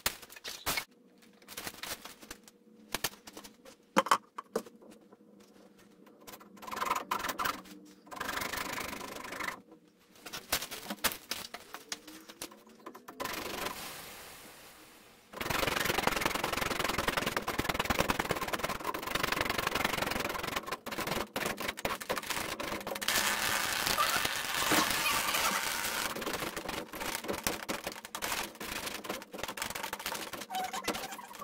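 Irregular clicks and knocks, then from about halfway a dense run of rustling and rapid clicking as a CPVC water pipe in an opened ceiling is handled and worked on by hand.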